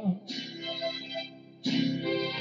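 Instrumental guitar accompaniment between sung lines: two strummed chords about a second and a half apart, each ringing out.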